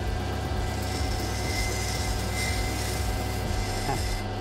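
Water-fed lapidary grinding wheel running with a steady motor hum while an opal is held against its rim and ground to shape, bevelling the stone's edge.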